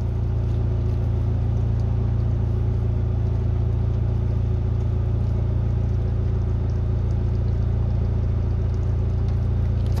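A steady low hum, even in loudness, with a few faint steady tones above it, of a mechanical kind like a running engine.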